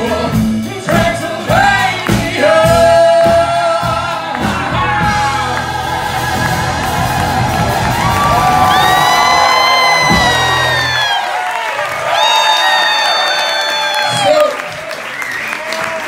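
Live rock band and vocals: singing over drums and bass, then long, held, arching sung notes, with the drums and bass dropping out about eleven seconds in.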